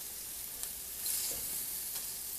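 Country-style pork ribs sizzling on the grates of a gas grill as they are turned with tongs: a steady, high sizzle of fat and juices cooking, swelling slightly about a second in.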